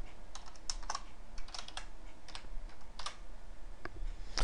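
Typing on a computer keyboard: a run of irregular, separate keystrokes.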